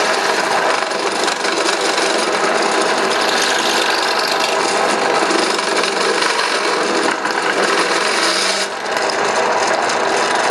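Drill press driving a step drill bit through an eighth-inch aluminum plate: a steady, real noisy grinding cut, easing off briefly near the end.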